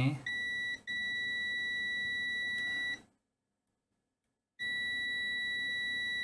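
Digital multimeter's continuity beeper sounding a steady high-pitched tone as the probes bridge a path on the charger board: a short beep, a brief break, then a long beep that stops about three seconds in, and after a second and a half of dead silence it sounds again. The continuity is through about 11 ohms, which the technician takes for the NTC thermistor after the fuse.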